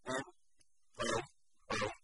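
A man's voice speaking in three short, separate bursts with pauses between them: halting lecture speech.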